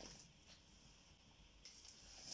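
Near silence: only a faint, steady hiss of room tone.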